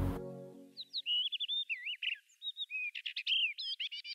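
Songbird singing in quick chirps and short whistled slurs, starting about a second in, just after the last low chord of background music fades out.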